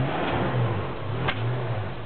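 Off-road 4x4 pickup's engine working in low-range four-wheel drive as the truck crawls through mud, its revs rising and falling in slow swells and fading near the end. A single sharp click comes a little past halfway.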